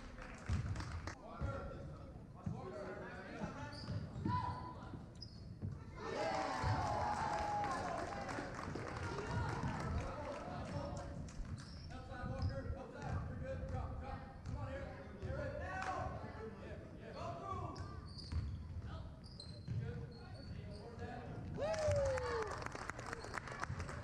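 Basketball game on a hardwood gym floor: a basketball dribbled in repeated thumps, sneakers squeaking, and voices of players and spectators over it, echoing in the large hall.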